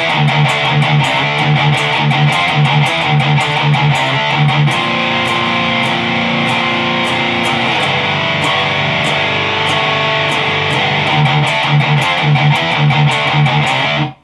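Electric guitar in drop D tuning playing a heavy metal riff in D minor: rhythmic chugging on the low strings, then held ringing chords (a B♭5 and a G5, each with an added ninth) from about five to eight seconds in, then the chugging again. It stops at the end.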